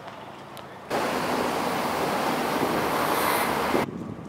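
Sea water washing against a harbour wall: a steady rush of surf noise that starts suddenly about a second in and cuts off just before the end, over a fainter hiss.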